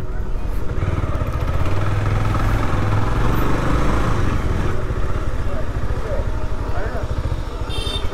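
Motorcycle engine running under the rider with wind noise on the helmet camera's microphone; the engine's low beat is strongest for a few seconds from about a second in, then eases. A brief high-pitched beep near the end.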